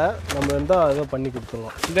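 A man talking, with his voice rising and falling; no other sound stands out above the speech.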